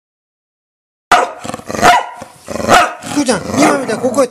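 A pet dog barking three loud, sharp times, starting suddenly about a second in, the barks coming under a second apart, in protest at its owner.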